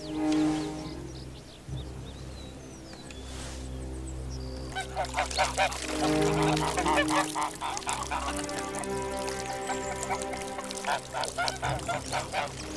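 Soft background music with held notes and a low drone, and from about five seconds in a flock of domestic geese honking over it, many short calls in quick succession.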